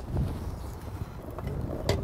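A low, steady rumble of outdoor stove-side background, with one sharp knock of a cooking utensil against a pan near the end.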